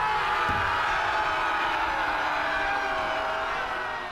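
Many voices shouting together in one long, held cry, like a crowd of warriors bellowing, fading out near the end.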